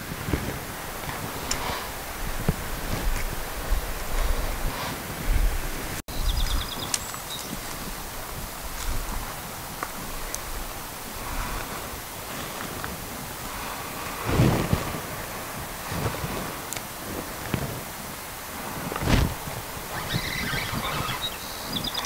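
Outdoor stream-bank ambience: wind buffeting the microphone in low gusts, with rustling and two soft knocks in the second half.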